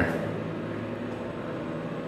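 Steady low hum with an even hiss: the background hum of a quiet building interior, with no distinct events.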